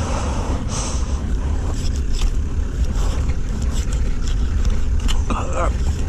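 Knife cutting and scraping around a wild boar's jaw, with scattered rustling and handling noises over a steady low rumble. A brief muffled voice sound comes near the end.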